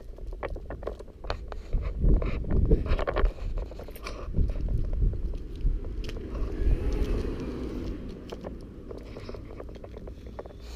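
Uneven low rumble of wind and handling noise on a handheld camera's microphone, with scattered clicks and scrapes. It is heaviest a couple of seconds in and again around the middle.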